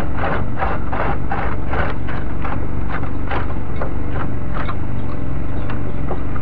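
Hand saw cutting through the ends of wooden boards, in regular rasping strokes of about two to three a second that slow slightly towards the end. A steady engine drone runs underneath.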